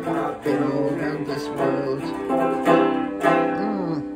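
A 1930 Concertone four-string tenor banjo strummed in chords, each strum ringing on, with a strong regular strum about every half to one second.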